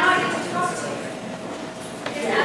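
Speech: several people talking at once in a large hall, a murmur of voices with no one addressing the room.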